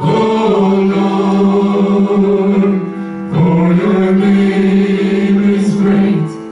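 Two men and a woman singing a slow worship chorus together through microphones, in long held notes, with a short break for breath about three seconds in.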